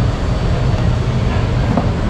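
Loud, steady low rumble of a busy indoor entertainment venue's background noise, with faint voices in the crowd.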